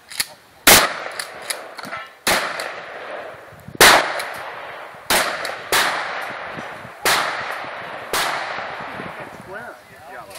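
Eight gunshots from a long gun, fired at uneven intervals of about one to one and a half seconds, each followed by a long echo, with a few fainter ticks in between.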